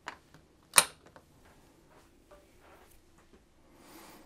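An HDMI plug being pushed into a metal USB-C hub: a click, then a much louder sharp click just under a second later, followed by a few faint ticks.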